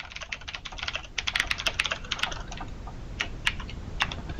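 Typing on a computer keyboard: a quick run of key clicks for about two seconds, then a few scattered clicks.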